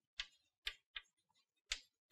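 Chalk writing on a blackboard: four short, faint clicks of the chalk striking the board as letters are formed, irregularly spaced.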